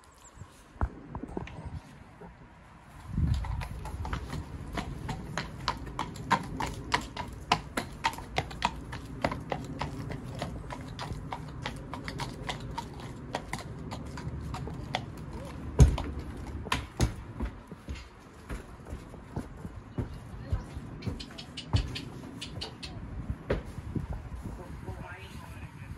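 Hooves of a Welsh Section D cob clip-clopping on concrete as the horse is led at a walk, about two to three hoofbeats a second, with one heavier thud about two-thirds of the way through as it is loaded into a horsebox.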